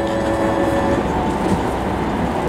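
Steady rumble and hum of a large railway station, with no clear voice or music.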